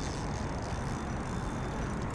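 Steady rushing outdoor background noise with a low rumble and no distinct events.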